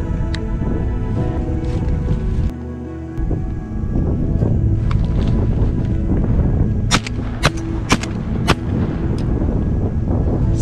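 Background music with a steady beat, with a quick string of about four sharp shotgun reports over it, about seven seconds in.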